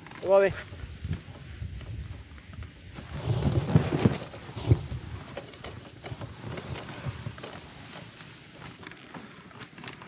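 A man's short shouted call near the start, then a louder stretch of rough, scuffing noise with a few sharp knocks about three to five seconds in, over a low steady background.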